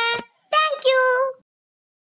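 A child's high voice in a sing-song delivery: one phrase ends just after the start, and a short second phrase stops about a second and a half in.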